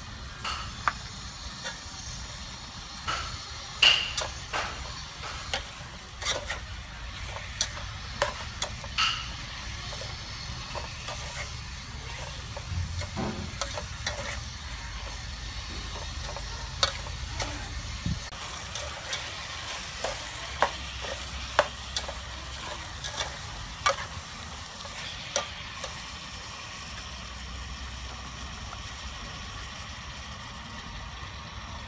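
A metal spoon and ladle clink and scrape against a small bowl and an aluminium pot as beef is stirred in the pot, in sharp irregular taps over a steady sizzle of the food frying.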